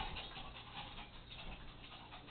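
Two small dogs play-wrestling on carpet: faint scuffling with light, irregular ticks.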